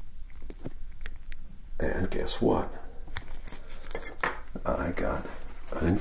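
Soft-spoken speech, with a few light clicks in the first couple of seconds before the voice comes in.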